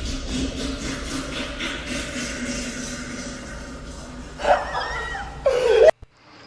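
A long, drawn-out fart with a steady buzzing pitch that fades about four seconds in, wet enough to be called "not a fart, that was poo". Short bursts of laughter follow near the end.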